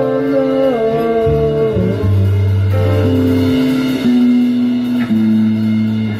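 A rock band playing live in a rehearsal room: electric guitars over a bass guitar line and drum kit, with held chords changing about once a second and no singing.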